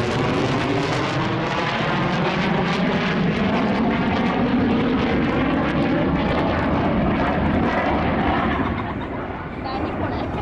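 Jet noise from an F-15 fighter's two turbofan engines during a display turn overhead: a loud, steady rushing sound with a slowly sweeping, wavering tone. It drops somewhat in loudness about nine seconds in.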